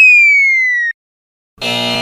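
Cartoon game sound effects: a loud single whistle tone sliding down in pitch for about a second, then, about a second and a half in, a harsh wrong-answer buzzer lasting about a second as a wrong head is marked with a red X.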